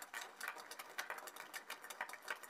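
Audience applauding: a dense run of many hand claps.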